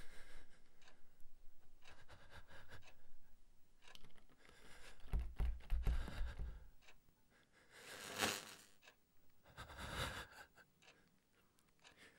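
A wooden door's knob and lock being worked by hand, with soft scrapes and small clicks, a low thump about five seconds in, then two short bursts of noise near the end.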